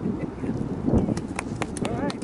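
A small group clapping for the ribbon cut: scattered, uneven hand claps starting about a second in, over people talking.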